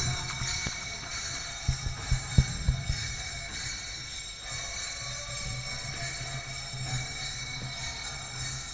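A hand bell rung steadily and continuously, the kind rung during an arati, with a few soft low thumps about two seconds in.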